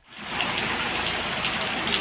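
Steady rushing water on a flooded street in rain, with floodwater washing around a pickup truck as it wades through.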